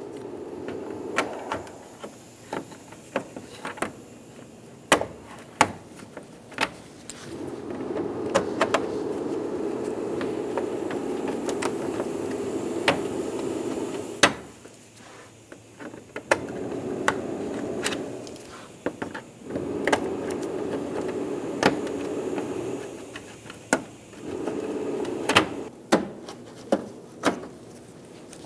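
Plastic push clips being pried out of the top of a car grille with clip removal pliers: a scatter of sharp clicks and snaps, some in quick runs, others spaced out. A steady low hum comes and goes in several stretches between them.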